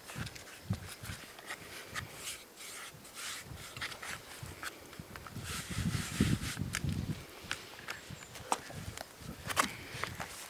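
Hands pressing and patting pie pastry dough flat on a floured plastic cutting board, without a rolling pin: irregular soft thumps and rubbing with scattered light clicks, the thumps heaviest a little past the middle.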